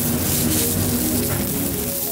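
Background music with a light, patter-like clatter of small tumbled green marble chips being stirred and scooped by hand.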